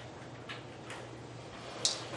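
Paper sheets being handled: a few short rustles and crinkles, the sharpest and loudest near the end, over a steady low hum.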